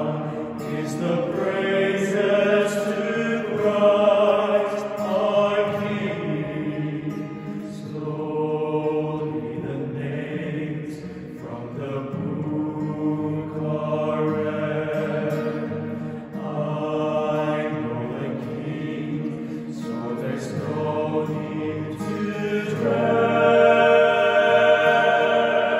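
A male vocal ensemble singing a slow sacred song in harmony, accompanied by an acoustic guitar, with long held notes that swell louder near the end.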